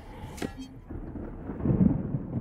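A sharp click, then a low rumble that swells to a heavy, booming peak near the end: cinematic sound effects from a film soundtrack.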